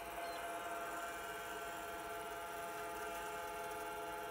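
Apple Lisa 2/10 computer running: a steady hum made up of several held whining tones, with no clicks or changes.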